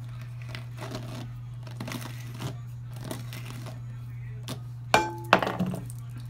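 Soft rustling and small clicks of hands pulling shed hair out of a paddle brush's bristles, over a steady low hum. About five seconds in come two sharp knocks, the first with a brief ring.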